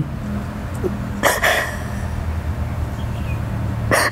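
A woman crying: a short, sharp sob about a second in and another just before the end. A steady low rumble sits underneath.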